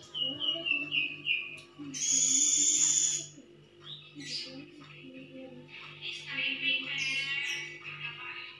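Music from a television soundtrack. It opens with a run of high falling chirping notes, has a loud, hissy high burst lasting about a second around two seconds in, and ends with high, wavering singing.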